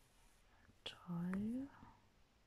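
A woman's short wordless hum, rising in pitch, a little after a second in, just after a light click.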